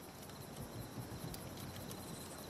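Faint night ambience of crickets chirping, a thin steady high trill.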